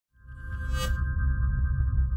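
Short electronic logo sting: held high tones over a deep pulsing bass, with a bright shimmer swelling up just under a second in.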